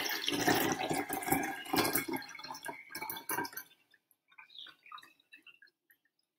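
Water poured from a glass jug into a large glass jar already partly full of water, a splashing pour that thins out about three and a half seconds in to a few scattered drips and trickles.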